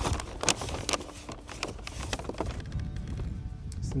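Brown paper bag rustling and crinkling in short bursts as hands rummage in it and pull items out. Faint background music runs underneath.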